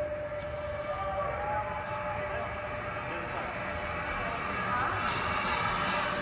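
Crowd noise between songs at a live rock show, over a held synthesizer tone with slow gliding notes. Near the end a wash of high noise builds as the band gets ready to start the song.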